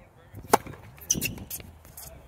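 A tennis serve: the racket strikes the ball with a single sharp pop about half a second in. A second, softer burst of sound follows about half a second later.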